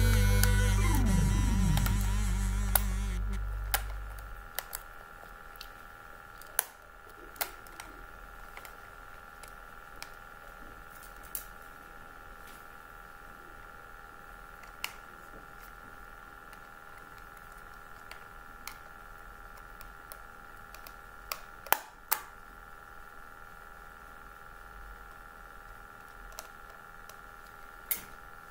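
Music fading out over the first four seconds, then scattered small clicks and taps as a screwdriver and fingers work on the plastic body of an Otomatone, over a faint steady hum.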